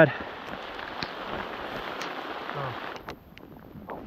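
Heavy rain falling in a downpour: a steady hiss with a few sharp ticks of drops, which drops away about three seconds in.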